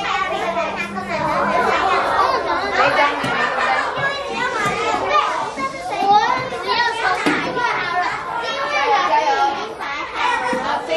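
Many children's voices chattering and calling out at once in a classroom.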